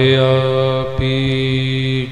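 Sikh kirtan singing: a voice holding one long note over a steady harmonium drone, with one low thump about halfway through.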